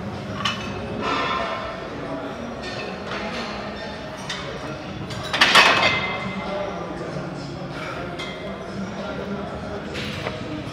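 A barbell loaded with plates is set back into a steel power rack at the end of a set of front squats, with one loud metal clank about five and a half seconds in. Voices carry through a large gym hall underneath.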